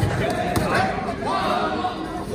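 Dull thuds from a point-sparring exchange, padded kicks and feet landing on the foam mat: one at the start and another about half a second in. Spectators' voices and shouts run underneath.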